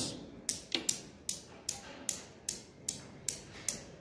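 Steel balls of a Newton's cradle clicking against each other, two raised balls striking the row of three: a steady run of sharp clicks, about two to three a second.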